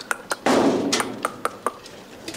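Puppies scrambling in a metal-sided pen around a rubber toy: a string of light clicks and knocks, several with a short metallic ring, and a louder scuffling rush about half a second in.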